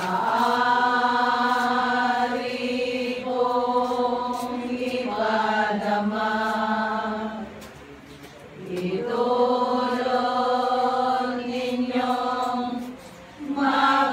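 A group of women singing a hymn together in long, drawn-out notes, in phrases broken by brief pauses for breath about eight seconds in and again near the end.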